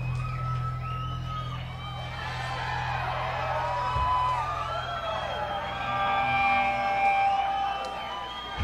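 Live rock concert crowd cheering, whooping and whistling as a song ends, over a steady low hum.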